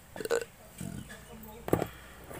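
Steel motorcycle clutch parts, the pressure plate and clutch plates, clink sharply once near the end as they are fitted together by hand. Earlier there are a few short, low vocal sounds.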